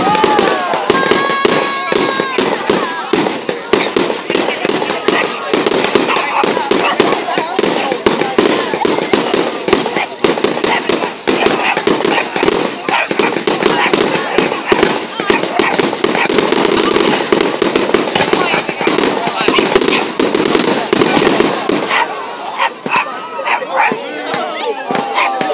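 Fireworks display: a dense, continuous barrage of bangs and crackles, many to the second, easing slightly near the end.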